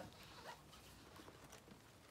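Faint handling sounds of a nylon tote bag being opened: soft fabric rustle and the light clicking of a zipper.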